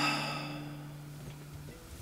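Acoustic guitar's low held note ringing softly and dying away, under a breathy exhale hiss that fades over the first second.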